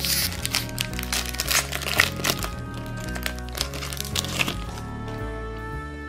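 A foil booster-pack wrapper crinkling and tearing open, a run of sharp crackles mostly in the first half, over background music.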